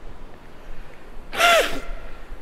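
A man weeping: one short, choked sobbing cry about one and a half seconds in, falling in pitch, over a low rumble.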